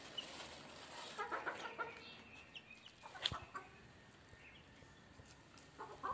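Chickens clucking softly, a short run of clucks about a second in. A single sharp click comes a little after three seconds.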